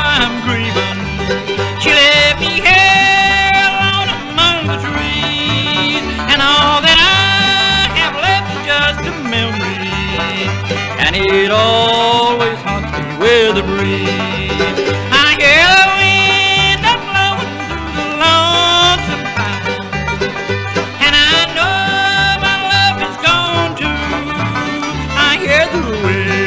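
Bluegrass band's instrumental break: sliding fiddle lines over banjo, guitar and a steady alternating bass.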